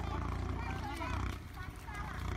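People talking in a non-English language, over a steady low rumble.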